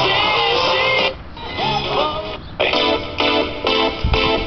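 Music playing from a Sony CFS-207 boombox radio: a singing voice over guitar, then short repeated chords about three times a second from about two and a half seconds in.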